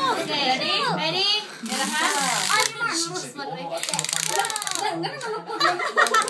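Several people talking and laughing over one another, with a rapid clicking rattle of a clear plastic container being rummaged by hand in the second half.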